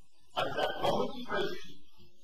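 A man lecturing, with the words hard to make out.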